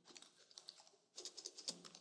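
Faint typing on a computer keyboard: quick, irregular keystrokes that thicken into a rapid run in the second half as a card number is entered.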